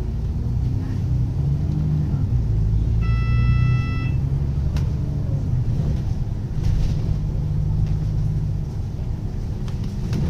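Alexander Dennis Enviro 500 double-decker bus heard from inside while moving: a steady low engine and road rumble. About three seconds in, a single electronic beep lasts about a second, and a sharp click follows shortly after.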